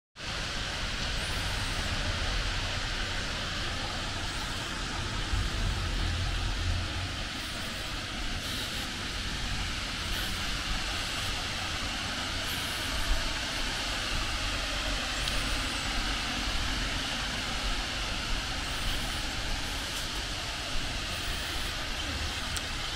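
Steady outdoor background noise, an even hiss with a low rumble that rises and falls.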